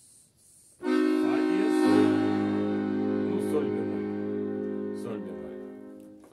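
A bayan (Russian button accordion) holds a sustained chord. It starts about a second in and fades slowly near the end.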